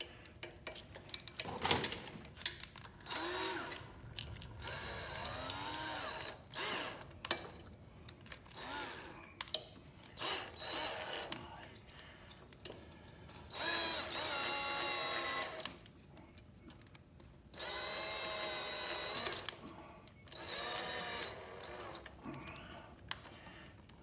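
Cordless drill motor whining in a series of short start-stop bursts, from under a second to about two seconds long, with a few clicks between them. The drill is turning a rod that works a new urethane tire onto a bandsaw wheel.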